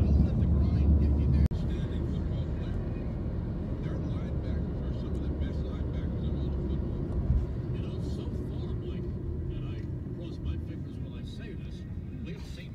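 Car road noise heard from inside the cabin: a steady low rumble that drops abruptly about a second and a half in, then grows gradually quieter toward the end as the car slows.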